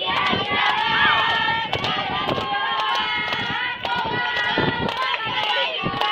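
Many young women's voices at once, loud and overlapping, with hand claps scattered through.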